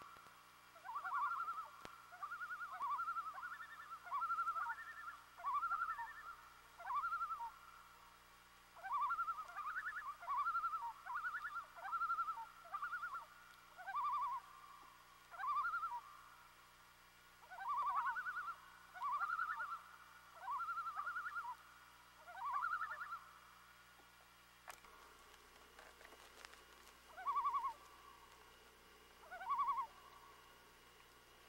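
Birds disturbed at their nesting site giving repeated alarm calls, short phrases of a few quick notes about once a second. The calling pauses for a few seconds near the end, then two more calls follow.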